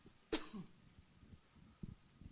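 A single short cough about a third of a second in, followed near the end by a soft low thump.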